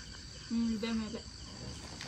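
Crickets trilling steadily, one unbroken high note.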